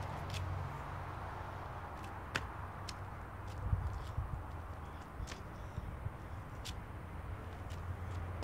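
Quiet outdoor background with a low steady hum, a few scattered sharp light clicks, and a brief low rumble about four seconds in.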